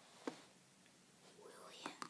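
Faint whispering voice, with a short sharp tap about a quarter second in.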